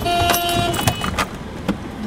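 Road traffic and street noise, with a few sharp knocks about one, one and a quarter and one and three-quarter seconds in, and a brief steady tone in the first half second.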